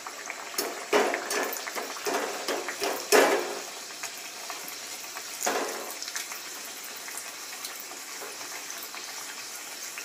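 Pathir pheni pastry deep-frying in hot oil in a small kadai: sizzling and crackling, with loud bursts in the first few seconds, the sharpest about three seconds in, then a steadier sizzle.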